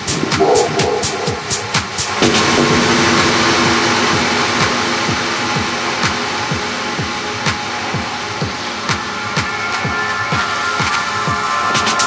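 Minimal techno mix: a steady kick drum at about two beats a second. About two seconds in, the crisp hi-hats drop out as a hissing wash of synth noise swells, and the hats return sparsely later. Near the end a high sustained synth tone enters.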